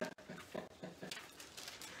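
A man laughing quietly to himself: a run of soft, breathy chuckles, several short pulses a second.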